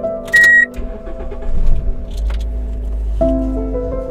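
A short electronic chime about half a second in, then a Lincoln SUV's engine starting a little more than a second later and settling into a low idle, under background music.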